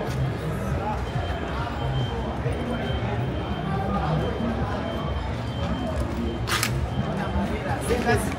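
Busy street ambience: music with a heavy bass beat plays under the babble of passing voices, with a short hiss about six and a half seconds in.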